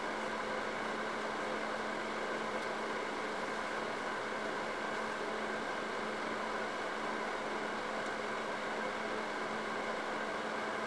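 Steady background noise: an even hiss with a faint low hum that does not change.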